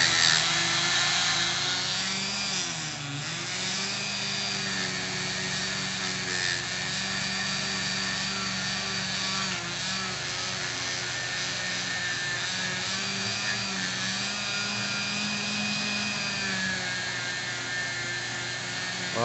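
Handheld rotary tool spinning an abrasive polishing bit inside a cylinder-head exhaust port: a steady motor whine with the bit rubbing against the metal, the pitch sagging briefly twice as the bit is pressed harder into the port.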